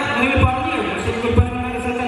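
A man's voice through a hall's microphone and loudspeakers, with a few low thumps.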